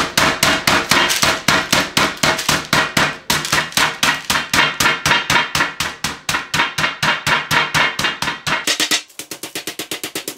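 A fist pounding raw chicken breasts flat through a paper covering on a glass tabletop: a rapid run of thuds, about five a second, that gets softer about nine seconds in.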